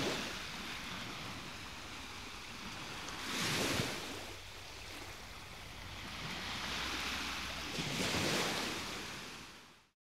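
Sea waves washing in, two swells rising and falling away, fading out at the end.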